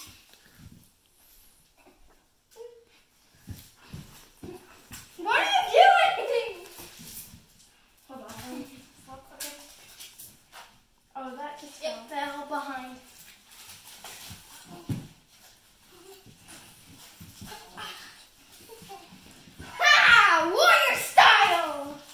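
Two children play-wrestling: high cries, squeals and wordless exclamations, loudest about five seconds in and again near the end, with scattered thumps and scuffling between them.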